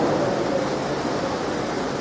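Steady rushing background noise with no clear tone, heard in a pause in a man's microphone speech.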